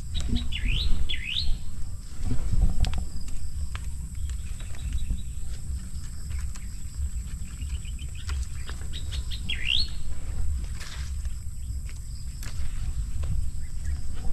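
A bird calling: two quick swooping calls about a second in, a run of short chirps around eight seconds, and another swooping call near ten seconds, over a low, uneven rumble.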